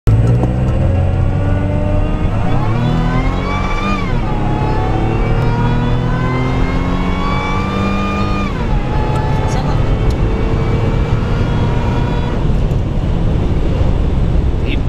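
Engine of a Nissan Frontier pickup heard from inside the cab as it accelerates, its pitch climbing and then dropping at an upshift about four seconds in and again at a second upshift past eight seconds, over a steady low drone.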